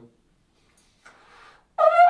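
A soft breath, then near the end a trombone attacks a loud, steady high F, squeaked out at the top of the player's range.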